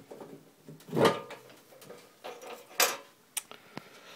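The cover over a 40-watt laser cutter's tube compartment being handled and opened: two scraping knocks, then two short sharp clicks near the end.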